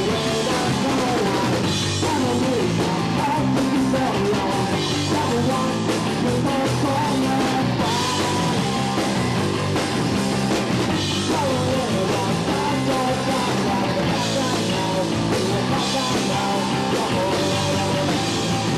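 Punk rock band playing live: electric guitar, bass and drum kit, with a man singing lead vocals over them.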